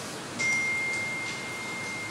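A steady, high-pitched electronic tone that comes in about half a second in and holds unchanged for over a second, over faint room hiss.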